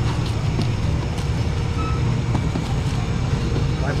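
A steady low rumble under faint background chatter, with light clicks and rustles from plastic bags and plastic baskets being handled.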